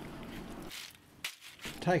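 Whelk shells clattering faintly in a rope net basket as it is handled, with one sharp click a little past one second in.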